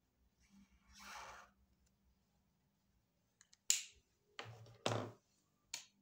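A felt-tip marker stroke scratching across the sheet about a second in, then a run of sharp clicks and knocks as the markers are handled, with the loudest click a little before the 4-second mark and two heavier knocks soon after.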